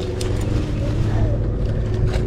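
Steady low hum of the fishing boat's engine idling, with a few short clicks about a quarter of a second in.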